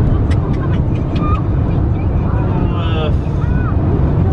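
Steady low road and engine rumble inside a car's cabin while it drives at highway speed.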